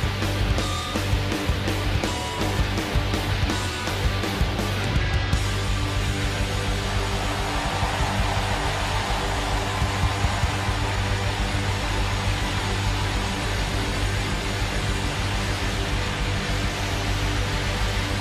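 Live rock band playing loud, with distorted electric guitars, bass and drums. The sharp drum hits stop about five seconds in, leaving a sustained, noisy wash of held chords.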